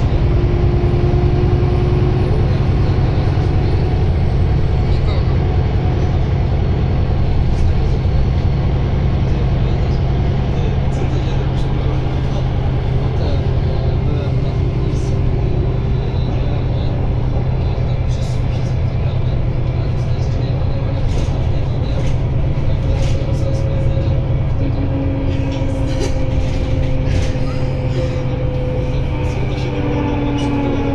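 Cabin sound of a Solaris Urbino 12 III city bus under way: its Cummins ISB6.7 inline-six diesel makes a steady low drone. Faint whining tones from the drivetrain shift up and down in pitch as it drives.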